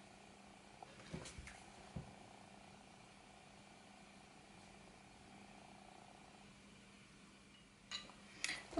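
Near silence: faint steady room hum, with a few soft taps between one and two seconds in.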